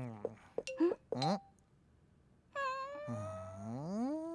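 Cartoon characters' wordless vocalizations: a few short, squeaky vocal blips in the first second and a half, then after a pause a long hum that dips and then rises in pitch.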